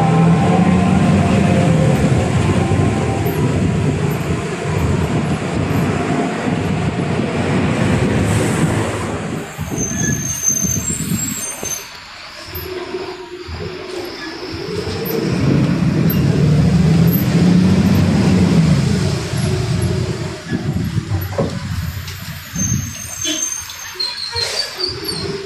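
Diesel engine of a Mercedes-Benz 1570 city bus heard from inside the passenger cabin, pulling with its pitch rising and falling. It eases off about ten seconds in as the bus slows, with a brief high brake squeal, then pulls away again with the engine rising once more; another short squeal comes near the end.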